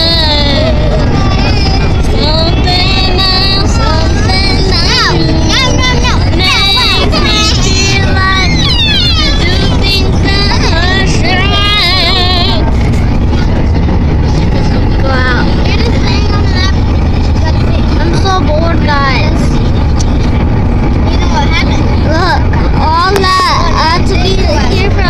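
Children's high-pitched voices shouting, squealing and half-singing, thickest in the first half, over the steady loud road and wind rumble of a moving car.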